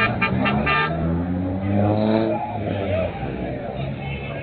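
A car horn honked in quick short beeps during the first second, then a car engine revving up with a rising pitch about two seconds in, over street noise.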